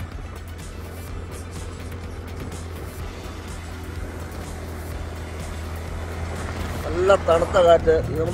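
Steady low drone of a vehicle's engine and road noise while riding. About seven seconds in, a voice or singing starts over it.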